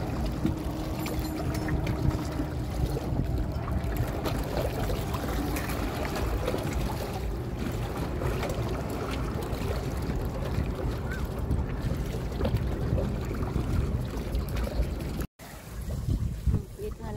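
Wind buffeting the microphone over small waves lapping against shoreline rocks, a steady rumbling wash with a brief dropout to silence near the end.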